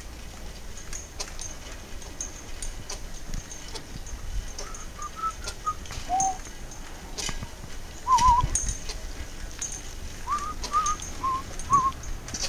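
Birds singing: short warbling whistled notes in small groups of two to four, over faint high chirps that recur throughout. A low thump about eight seconds in is the loudest moment.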